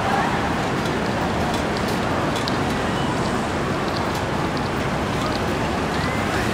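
Steady outdoor background noise with indistinct voices and a few faint, short high clicks; no single sound stands out.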